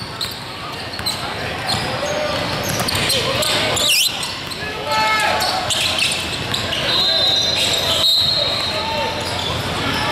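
Basketball game sounds in a gym: a ball bouncing on the hardwood floor, sneakers squeaking, and scattered shouts from players and spectators. A high steady tone lasts about a second and a half past the middle.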